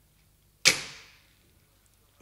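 A telephone receiver hung up on its cradle: one sharp clack about two-thirds of a second in, fading away over most of a second.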